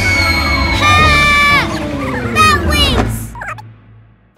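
Cartoon falling sound effect: a long descending whistle over a low rushing whoosh, with two wavering, warbling cries about a second and two and a half seconds in, fading out near the end.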